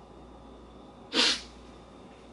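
A woman's single sharp, loud burst of breath about a second in, lasting a fraction of a second: an emotional gasp as she breaks down.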